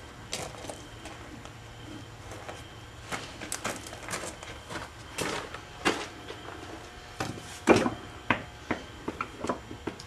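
Scattered light knocks and clicks, a few louder than the rest, over a low steady hum.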